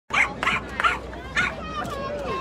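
A dog barking four times in short, separate barks, over the murmur of an outdoor crowd.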